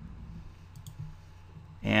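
Two faint clicks close together about three-quarters of a second in, over quiet room tone with a low hum.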